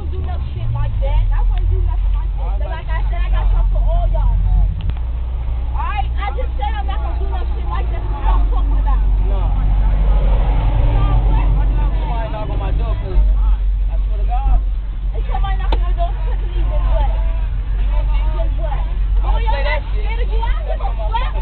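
School bus engine and road noise rumbling steadily as the bus drives, under the overlapping voices of students talking on board.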